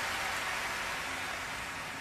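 Soft, steady hiss-like noise that slowly fades.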